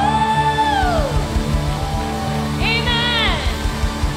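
A woman singing long, wordless held notes into a microphone over a live worship band: steady sustained keyboard chords with low drum hits underneath. One long note falls away about a second in, and a second phrase rises, holds and falls off past the middle.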